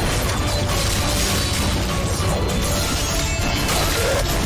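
Soundtrack of an animated action trailer: music under a dense, steady stream of gunfire and metallic weapon and impact effects from a battle scene.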